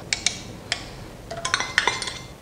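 A fork clinking against a small stainless steel cup as an egg is beaten: a few light metallic clicks, more of them close together near the end, some with a short ring.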